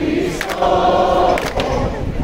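A large crowd singing together, a dense mass of voices holding a sustained melody.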